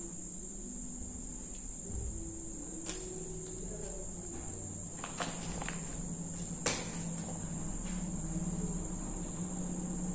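A cricket's steady, high-pitched trill, with a few light clicks and taps over it, the sharpest about two-thirds of the way through.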